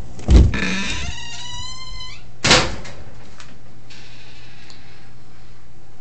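A door is pushed open with a thud and its hinge or closer squeals for about a second and a half, the pitch drifting slightly down. It then bangs shut about two and a half seconds in.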